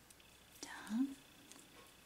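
A woman's short whispered or breathy vocal sound, a single syllable rising in pitch and lasting about half a second, near the middle.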